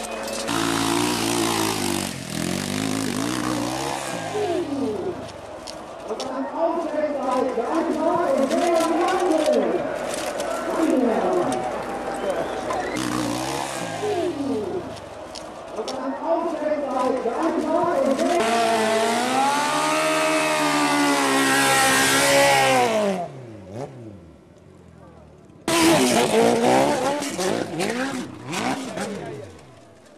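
Dirt bike engines revving hard on a steep hill climb, the pitch repeatedly rising and falling with the throttle. About three-quarters of the way in one long rev climbs and falls away, the sound drops out for a couple of seconds, then revving resumes abruptly.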